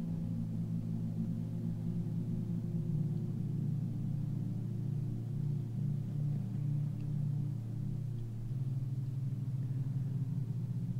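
Ambient meditation drone music: a low, sustained tone with a second tone above it that pulses gently partway through.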